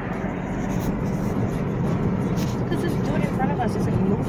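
Steady road and engine noise inside the cabin of a moving car, with a faint voice murmuring in the second half.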